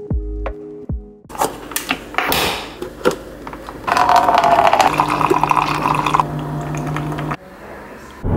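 Single-serve coffee maker brewing into a paper cup: a steady rush of hot coffee pouring, louder from about four seconds in, with a low steady hum joining and both cutting off suddenly near the end. A few notes of music open it.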